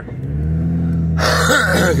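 Car engine running, heard from inside the cabin as a steady low hum. A little past the middle a louder rushing noise joins it and carries on to the end.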